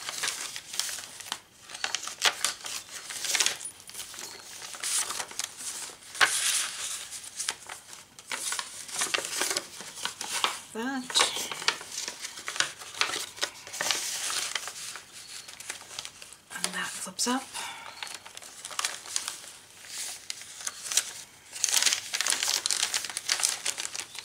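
Paper pages and tucked paper inserts of a thick handmade journal rustling and crinkling as they are turned, lifted and slid out. The sound is an irregular run of scrapes and flutters, with louder bursts of page handling near the middle and near the end.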